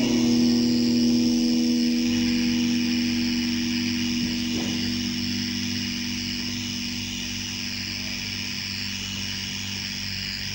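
A steady low droning chord holding on and slowly fading after the band's playing breaks off, under a constant hiss from the old live tape.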